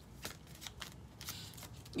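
Tarot cards being shuffled: faint, irregular papery clicks and snaps, a few a second.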